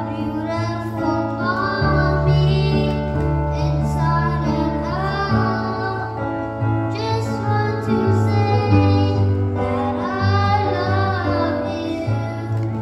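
A young boy singing a song into a microphone over an instrumental accompaniment with long held low notes.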